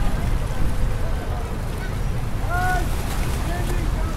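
Waterfront ambience: a steady low rumble of wind on the microphone and river water against the pier, with snatches of passers-by's voices.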